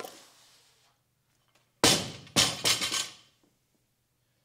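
A loaded barbell with rubber bumper plates is dropped from the shoulders to the gym floor about two seconds in. It lands with a loud bang and bounces a few times, the plates clanking as it settles. A lighter clank comes at the start as the bar is caught at the shoulders.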